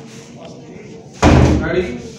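A wooden door slammed shut about a second in: one loud bang.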